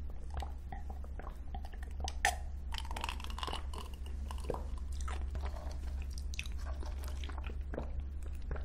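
Close-miked ASMR mouth sounds of sipping an iced drink and swallowing, with small wet clicks and one sharp click or clink about two seconds in. A steady low hum sits underneath.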